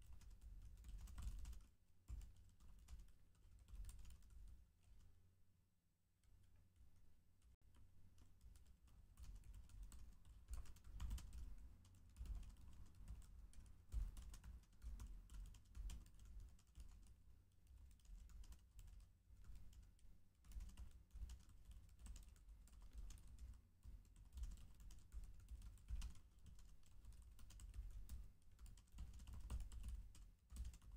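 Computer keyboard typing in quick, uneven runs of keystrokes, faint throughout, with a short lull about six seconds in.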